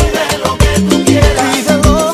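Cuban-style salsa music: a dense band recording with a steady, even percussion rhythm over held bass notes.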